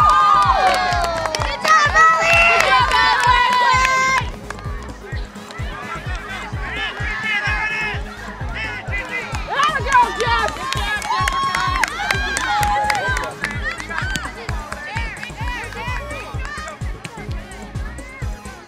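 Shrill cheering and screaming from players and spectators after a goal, over a music track with a steady beat. The cheering cuts off sharply about four seconds in, leaving the music.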